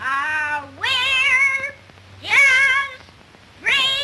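A small child singing in a high, wavering voice: four drawn-out notes with vibrato, each broken off by a short pause.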